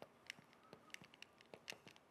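Faint squeaks and taps of a marker tip writing on a glass board. There is a quick series of about a dozen short strokes.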